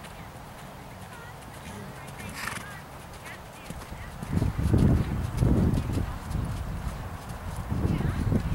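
Horse moving on sand arena footing, its dull hoofbeats faint at first and then loud from about four seconds in as it passes close, coming as low thuds about twice a second.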